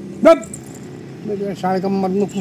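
A Labrador puppy gives one short, sharp bark about a quarter of a second in.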